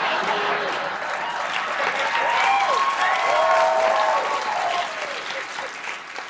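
Studio audience applauding after a punchline, with voices calling out over the clapping; the applause fades near the end.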